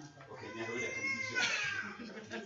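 A single high-pitched, drawn-out call that rises and then falls, lasting about a second, amid background talk.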